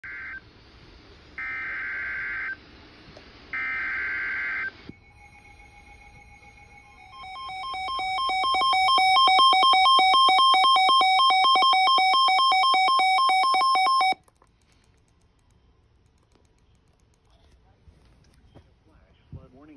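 Weather-alert radio receiving an Emergency Alert System flash flood warning: three short bursts of the SAME data header's harsh digital buzz, then the radio's alarm, a rapid pulsing beep that grows louder over about two seconds, holds for about five and cuts off suddenly, leaving near quiet.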